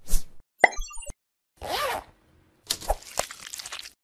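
Sound effects for an animated logo sting: a quick swish, a sharp pop with a few short high blips, a longer swish with a bending tone about one and a half seconds in, then a run of clicks and rattles near the end.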